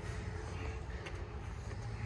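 Quiet outdoor ambience: a steady low rumble with a faint even hum and no distinct events.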